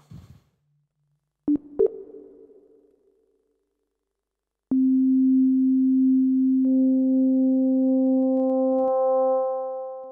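Yamaha SY77 init voice playing a plain sine-wave tone: two short notes about a second and a half in that ring away, then a note held from the middle. About two seconds into the held note, brighter overtones join it as a second FM operator is brought in, and the sound fades near the end.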